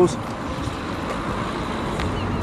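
Steady road traffic noise, an even rush with no single vehicle standing out.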